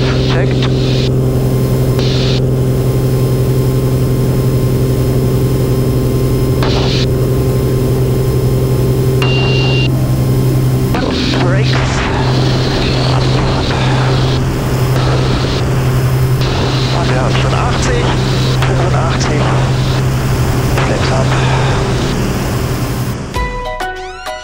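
Mooney M20K Encore's turbocharged six-cylinder engine and propeller at full takeoff power during the takeoff roll and lift-off, a loud steady drone that grows noisier and pulses from about halfway. Near the end the engine sound cuts off and gentle guitar music begins.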